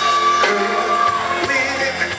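Live funk band playing in a large hall: drum kit, electric guitars, bass and keyboards, with singing. A sung note is held through the first half.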